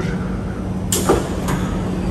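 Metro train doors and the platform screen doors sliding open, with a sudden rush of sound and a knock about a second in, over a steady low hum.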